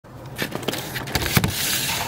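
Handling noise from the camera being picked up and set in place: a few sharp knocks and taps, then a rushing rub across the microphone for about the last half second.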